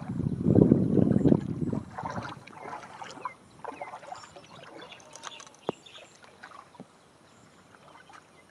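Feet wading through the shallow water of a flooded rice paddy, splashing loudest in the first two seconds and then moving in fainter, scattered sloshes, with one sharp click near the middle.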